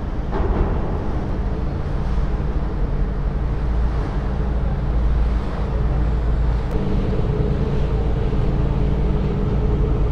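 Passenger ferry's engine droning as the boat motors past close by, over a steady low rumble.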